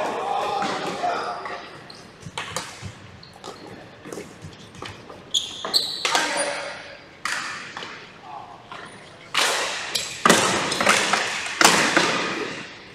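Ball hockey in a gymnasium: several sharp cracks of sticks and the ball striking each other and the hardwood floor, each echoing through the large hall. Short high squeaks, typical of shoes on the floor, and players' shouts come between them.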